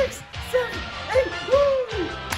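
Short hooting 'hoo' calls from a man's voice, each rising briefly and then falling in pitch, about every half second, with a longer one near the end, over upbeat workout music with a steady beat.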